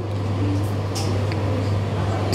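A steady low hum under a rumbling noise that swells at the start, with a couple of faint clicks about a second in.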